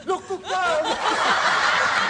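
People laughing: a few short chuckles, then many voices laughing together from about a second in.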